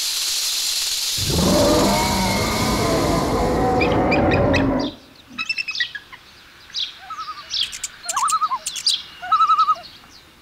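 A steady hiss, then a louder rushing noise from about a second in that stops suddenly about halfway through. After it, birds chirp and call, with short sharp chirps and a few warbled whistles.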